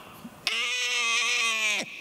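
A man's voice holding one long, level vowel for over a second, a drawn-out syllable in the middle of a sermon sentence.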